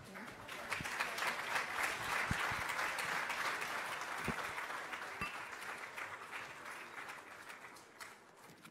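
Audience applauding, the clapping swelling in the first second and then slowly dying away.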